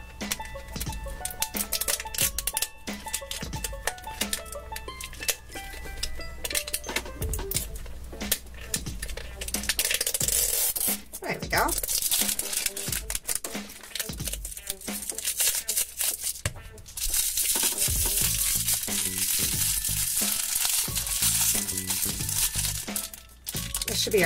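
Plastic wrapper of an LOL Surprise ball crinkling and tearing as its perforated zipper layer is peeled off by hand, with a long stretch of dense crinkling in the second half. Background music plays throughout.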